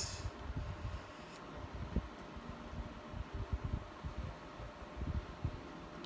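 Faint handling noise from a phone held in the hand: irregular low bumps and rubbing with a few small clicks, over a steady low hiss.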